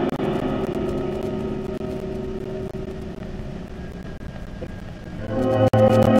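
Orchestral music in an old broadcast recording: a loud passage dies away into a soft, held chord, and the full orchestra comes back in strongly about five seconds in.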